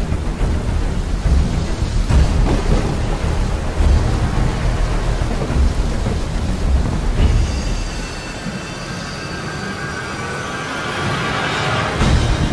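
Dramatic background soundtrack with a deep, uneven thunder-like rumble under a rain-like hiss. About seven seconds in the rumble fades and a high sustained tone swells toward the end.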